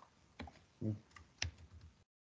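Faint computer keyboard and mouse clicks: a few sharp taps, the loudest about one and a half seconds in, with a brief low voice sound just before it. The sound cuts off suddenly at the end.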